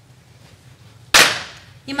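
A single sharp smack, a hand clap or slap made by a dancer, about a second in, dying away quickly in the room's echo.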